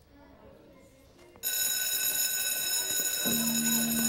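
Electric school bell ringing, starting suddenly about a second and a half in and holding steady at a loud, high, metallic pitch. A steady low tone joins about three seconds in.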